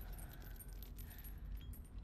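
Faint, scattered metallic clinking and jingling of a hanging chain, with small ticks here and there.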